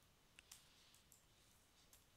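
Near silence, broken by a few faint computer keyboard key clicks, two close together about half a second in and another near the end.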